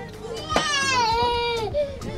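A young child crying: one long wavering wail that starts about half a second in and lasts over a second, with voices around it.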